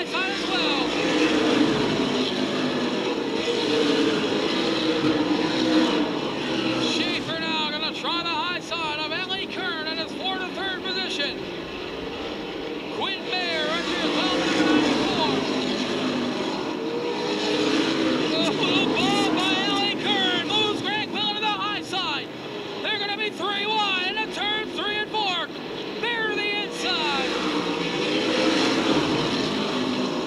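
Super late model stock cars racing on a paved oval, their V8 engines running at racing speed. The engine sound swells and fades every few seconds as the pack passes. Indistinct voices are mixed in.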